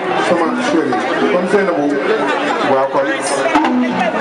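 Speech and chatter: many people talking at once, with a man speaking into a handheld microphone.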